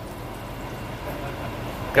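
Fry bake dough sizzling steadily in hot oil in a frying pan.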